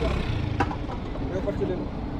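Low, steady rumble of vehicle engines running on a busy petrol pump forecourt, with faint voices in the background and a single light click about half a second in.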